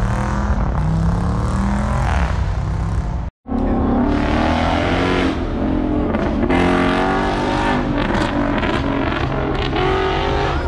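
Car engines running and revving, their pitch rising and falling, with a brief complete dropout of sound about a third of the way in.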